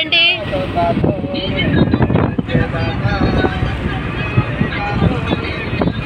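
Car cabin noise while driving: a steady low engine and road rumble with wind buffeting, and snatches of voices over it near the start and about a second in.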